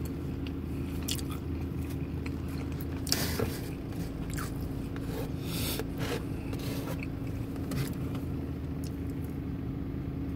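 A person biting and chewing pepperoni pizza, with irregular short crunchy mouth sounds and fingers handling the slice on its cardboard box, over a steady low hum.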